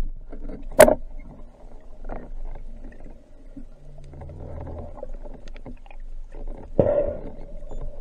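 Muffled underwater sound as picked up by a camera in a waterproof housing: a low rushing of water, a sharp click just before a second in, and a louder swell of water noise near the end.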